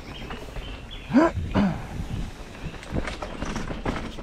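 Mountain bike rattling and knocking as it rides over rough downhill trail. A little over a second in come two short vocal whoops, the first rising in pitch and the second falling; they are the loudest sounds.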